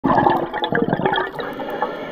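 Scuba diver's exhaled breath bubbling out of the regulator: a dense rush of crackling, gurgling bubbles close to the camera underwater.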